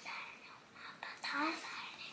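Speech only: a child whispering, with a short spoken sound about a second and a half in.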